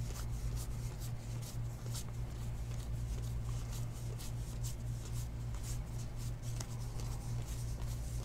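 Trading cards being flicked through by hand, one after another, giving quick papery slides and light ticks. A steady low hum runs underneath.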